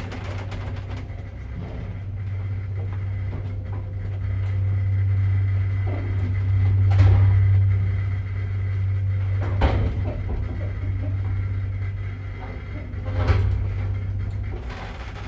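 Unmodernised second-generation Zremb passenger lift travelling through its shaft: the drive hums steadily and low. Sharp knocks and rattles come about halfway through, again a few seconds later and near the end as the car passes landing doors.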